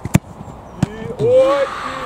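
A football kicked hard: one sharp thud of boot on ball, followed under a second later by a second, smaller knock. Then a man shouts.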